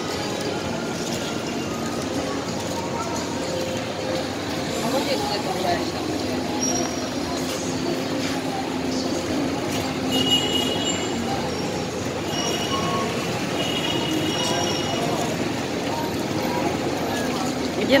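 Street traffic, mostly motorbikes, running steadily past with a murmur of voices from people nearby.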